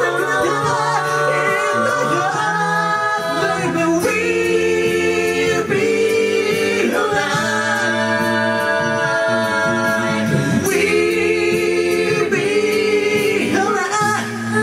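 A cappella group of male and female voices singing live through microphones: sustained close-harmony chords over a steady sung bass line.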